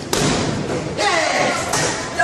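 A vending machine being kicked: heavy thuds against its front, two of them about a second apart.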